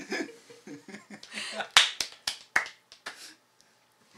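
Brief, scattered clapping from a few listeners, about five separate sharp claps over a second and a half, the first the loudest, acknowledging the end of a poem. Soft murmuring comes before the claps.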